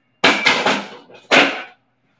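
Two loud clunks about a second apart, each trailing off in a short rattle: a pair of adjustable dumbbells being set down into their floor cradles.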